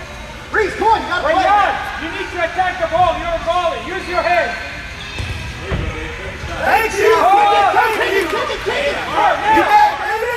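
Several voices shouting during an indoor soccer game, high in pitch like children's, in loud bursts from about half a second in and again from about six and a half seconds in, with a few ball thuds between them.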